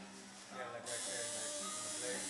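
Tattoo machine buzzing steadily, with voices in the background.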